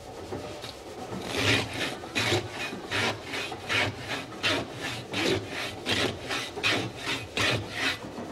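Hand saw cutting with steady back-and-forth strokes, about three a second, a rasping sound that starts about a second in.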